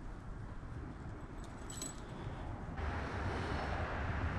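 Faint metallic clinking of a fishing lure and hook as they are worked free of a trout's mouth by hand, over low rumbling handling noise. A steady hiss comes in near the end.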